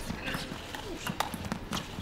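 Table tennis rally: sharp clicks of the celluloid ball struck by the rackets and bouncing on the table, a handful of them at an uneven pace, over a faint arena background.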